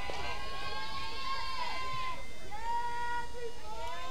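Several voices calling together in long, drawn-out chanted tones that overlap, a group cheer at a softball game.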